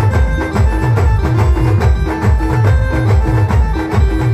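Live timli band music played loud through a large loudspeaker stack: a short keyboard melody repeating over a heavy, steady bass-drum beat and percussion.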